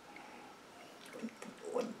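A person sniffing gin from a nosing glass: quiet sniffs and breaths, with a few short soft throat or mouth sounds in the second half.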